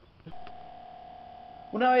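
A click, then a single steady tone held at one pitch for about a second and a half.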